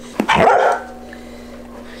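A dog barks once, a short bark about half a second in.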